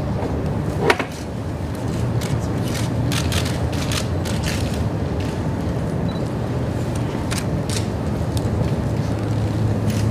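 Steady low mechanical hum with scattered short clicks and a single sharp knock about a second in.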